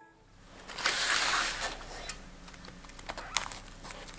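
Hands rustling dry moss and leaves, loudest about a second in, followed by a few small clicks and taps as a small apple on a stick is worked into an autumn flower arrangement.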